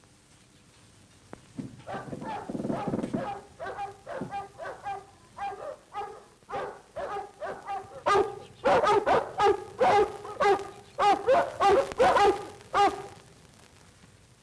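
Large dogs barking in short repeated barks, a few a second, much louder from about eight seconds in and stopping shortly before the end.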